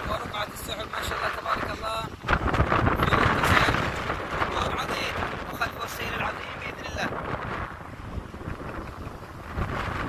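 Wind buffeting the microphone: a rough rushing noise that grows loud about two seconds in and eases off over the following seconds. A faint voice is heard in the first couple of seconds.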